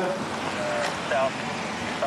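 Indistinct voices: brief snatches of talk over a steady background hiss.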